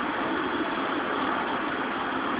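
Steady engine-like rumble and hiss of street noise, like a motor vehicle running, with no sudden events.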